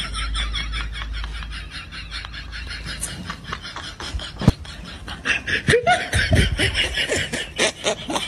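Laughter, fast and repeated, with one sharp click about four and a half seconds in.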